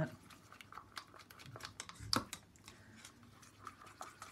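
Soft, irregular clicks and taps of a wooden craft stick stirring acrylic paint in plastic cups, working drops of silicone into the paint, with one louder knock about two seconds in.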